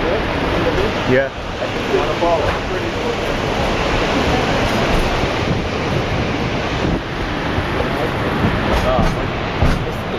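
Steady rushing noise of wind buffeting the microphone and the narrow-gauge train rolling along the track, heard from an open car of the moving train. A voice says a short word about a second in.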